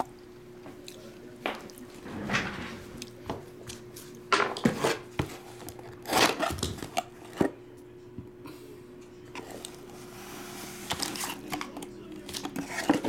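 Hands opening a cardboard trading-card box: separate scrapes and rustles of the lid and packaging, with crinkling as the wrapped pack is handled near the end. A faint steady hum runs underneath.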